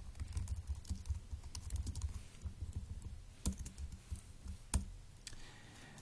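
Typing on a computer keyboard: a quick run of keystrokes, thinning out later, with two louder single key presses.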